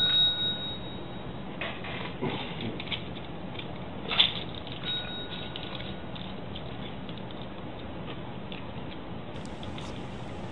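A desk service bell dinged by a cat's paw: one ring sounding out as it opens and a second ring about five seconds in, each fading within about a second. A sharp knock comes just before the second ring, amid small clicks and taps from the cat handling the bell.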